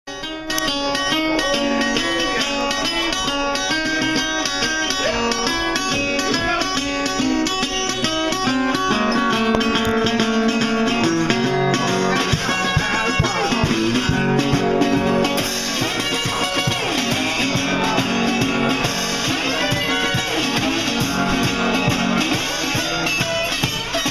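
Acoustic guitar playing an instrumental song intro of plucked notes. After about nine seconds lower notes join, and from about fifteen seconds the sound grows brighter and fuller.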